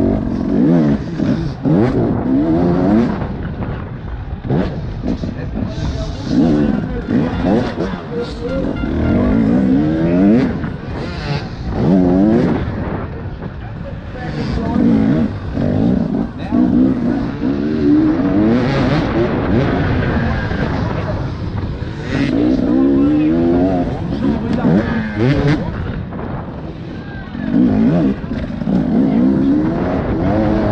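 Enduro motorcycle engine revving hard and dropping back over and over, rising in pitch every second or two, as the bike is raced around a dirt track.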